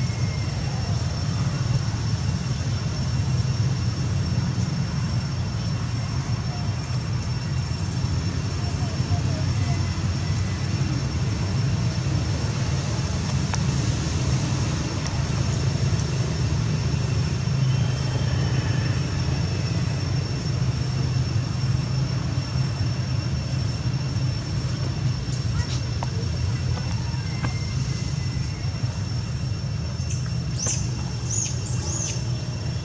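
Steady outdoor background noise: a constant low rumble with a thin, steady high-pitched whine above it, and a few faint clicks near the end.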